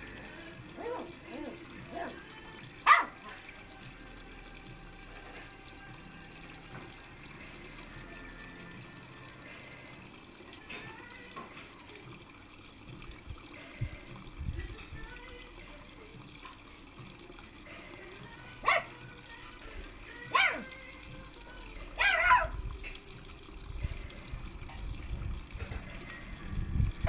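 A small puppy giving a few short barks, each part bark and part howl. One comes about three seconds in, then three close together near the end.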